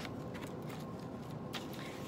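Paper and card pages of a handmade junk journal being handled and turned: a few light rustles and clicks over a steady low background hum.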